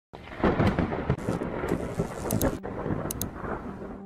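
A low, rumbling, crackling noise that swells about half a second in. A few brief high tinkling tones come near the middle, and a low steady hum enters about two and a half seconds in.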